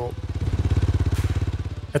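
Dirt bike engine running with a fast, even beat that swells and then fades.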